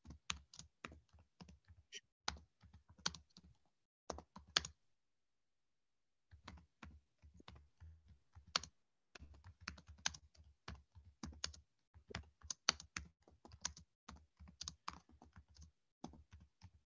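Computer keyboard typing, faint over a video-call microphone: irregular runs of key clicks, with a pause of about a second and a half a few seconds in.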